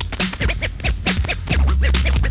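A DJ scratching a record over a hip hop beat with a deep bass line: quick, short scratches, several a second.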